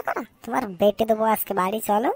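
A cartoon character's voice talking in quick, short phrases.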